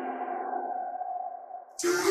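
A held electronic tone, a transition sound effect, slowly fading almost to nothing. Just before the end, electronic intro music starts abruptly.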